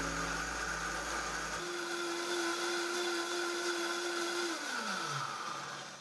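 Vitamix A2300i blender running its smoothie program with a steady high whine, then the motor winding down in a falling pitch near the end as the program finishes.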